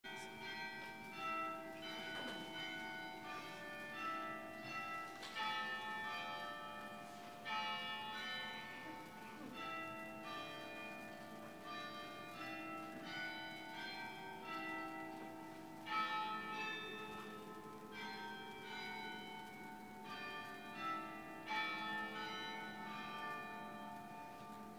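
Church bells playing a slow tune, one struck note about every second, each ringing on and overlapping the next.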